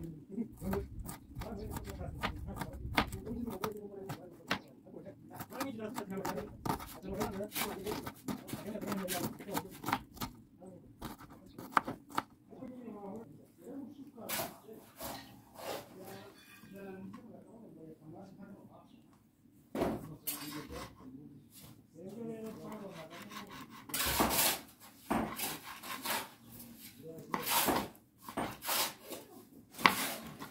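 Irregular clinks, knocks and scrapes of cooking pots and utensils, busier near the end, with voices talking in the background.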